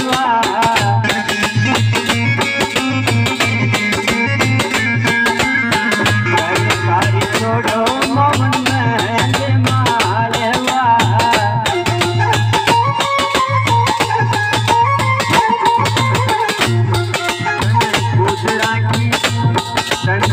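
Live Indian folk music: a dholak beaten by hand at a fast, steady beat, over sustained harmonium notes.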